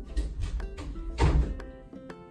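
A door rattling and thumping as a cat tries to get into the room, with the loudest knock a little over a second in. Background music plays throughout.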